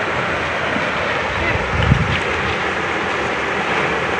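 Steady rushing of a flooded river in spate, with wind on the microphone adding a brief low rumble about halfway through.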